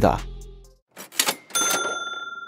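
Background music fades out, then a short noisy swish and a bright bell-like ding that rings on and slowly dies away: the sound sting for a channel logo card.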